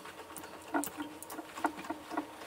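Light, irregular clicks and knocks, about seven in two seconds, from the hand-worked lever handle of a hydraulic press's jack, with a faint steady hum underneath.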